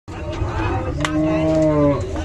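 Cattle mooing: one long, low, steady call starting about a second in, its pitch dipping slightly as it ends.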